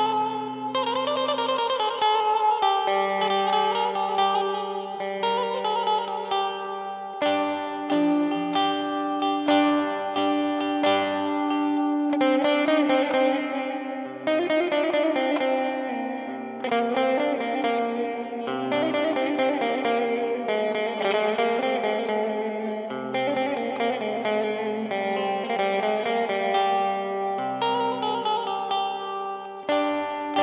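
Instrumental music with no singing: a fast plucked-string melody over held low bass notes that change every few seconds.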